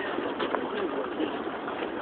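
Pigeons cooing, low and intermittent, over steady outdoor ambience.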